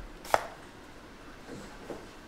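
A foil-wrapped trading-card pack set down on the table with one short, sharp tap about a third of a second in, followed by faint rustling near the end.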